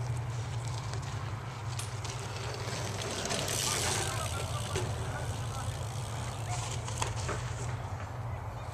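BMX bike going over a dirt jump: a rush of tyre noise on the dirt about three and a half seconds in, over a steady low rumble, with a couple of short clicks.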